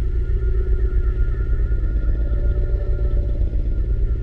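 A steady, loud low drone with a few faint held higher tones, the sound bed of an animated end screen.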